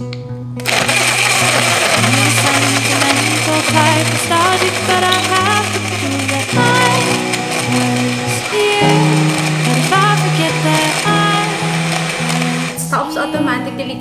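A cordless BlendJet 2 portable blender runs steadily, blending milk, frozen bananas, strawberries and greens. It starts about half a second in and stops shortly before the end. Background music with a melody and changing bass notes plays over it.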